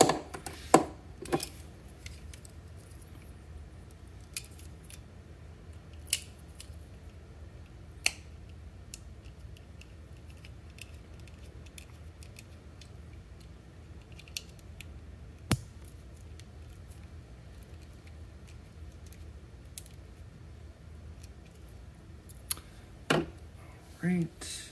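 Scattered light clicks and taps of small hand tools and electronic parts being handled on a desk: a quick cluster in the first second and a half, then single clicks every few seconds, over a steady low hum.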